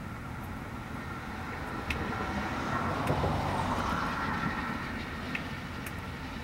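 Steady vehicle and traffic rumble that swells louder around the middle, then eases off again.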